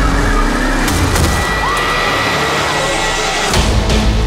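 Loud, dense film-trailer soundtrack: music mixed with heavy sound effects, carrying on steadily with a brief drop and a fresh hit near the end.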